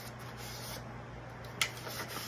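Sheets of construction paper being handled and folded, with a soft rustling and one sharp crackle of paper about one and a half seconds in.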